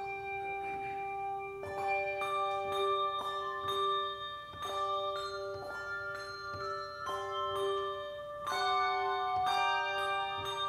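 Handbell choir playing: struck handbells ringing with long sustained tones, several notes overlapping into chords, with new notes struck about once a second.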